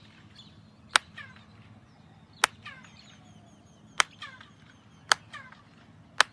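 Four single handclaps, about a second to a second and a half apart, in front of the stepped pyramid El Castillo at Chichén Itzá. Each clap is answered by a chirped echo off the staircase that falls in pitch, the quetzal-like echo the pyramid is known for.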